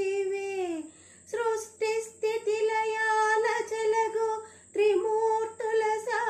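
A woman singing a Telugu padyam solo, with no accompaniment. A long held note slides down and ends about a second in. After a short breath she goes on in wavering, ornamented phrases, with another brief pause near the middle.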